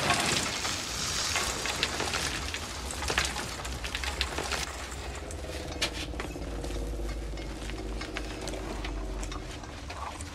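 Film soundtrack ambience: a low rumble with many faint, scattered clicks and scrapes. A faint low drone comes in about halfway through.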